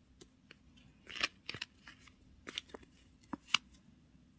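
Pens and ring-bound paper cards handled by hand: a short scratchy rustle about a second in, then several sharp separate clicks and taps.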